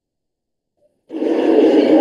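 Video-call audio cut out to dead silence by a dropped connection, then about a second in a loud, rough sustained sound bursts through as the audio comes back.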